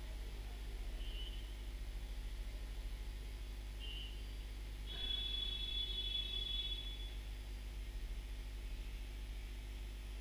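Quiet room tone with a steady low electrical hum. Faint high-pitched chirps sound briefly about a second in and near four seconds, then a longer one from about five to seven seconds.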